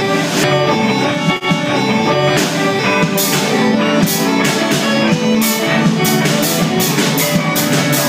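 A rock band playing live with electric guitars, keyboard and drum kit. A brief drop about a second and a half in; cymbal hits come thicker in the second half.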